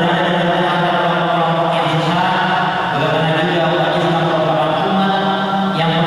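A man's voice chanting in long held notes with short breaks between phrases, in the style of Qur'anic recitation.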